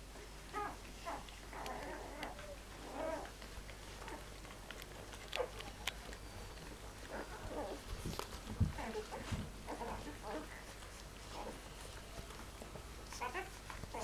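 Eleven-day-old flat-coated retriever puppies squeaking in short, high calls while they nurse, the squeaks coming in scattered clusters throughout.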